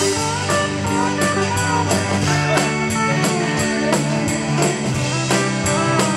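Live country band playing an instrumental passage: a steel guitar slides and bends its notes over strummed acoustic guitar, bass and a steady drumbeat.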